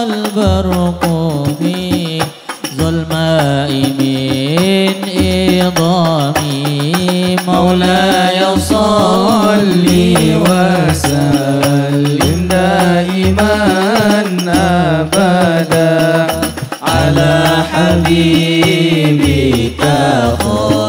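Hadroh ensemble: male voices singing an Arabic shalawat with long, ornamented melodic lines, accompanied by rebana frame drums in a steady rhythm.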